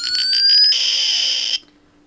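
Iron Man–style repulsor blast sound effect played through a small speaker by a breadboarded microcontroller circuit. A rising, pulsing whine charges up, then gives way to a noisy blast that cuts off suddenly about a second and a half in.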